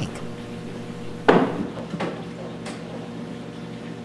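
Acrylic aquarium lid knocked while being handled: one sharp clack about a second in, then two faint clicks, over a steady low hum.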